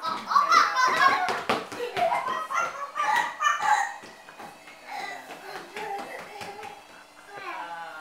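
Young children's voices, excited and loud, mixed with a few sharp knocks in the first couple of seconds; after about four seconds the voices drop to quieter talk.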